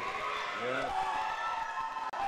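Voices with long held tones, steady in level throughout.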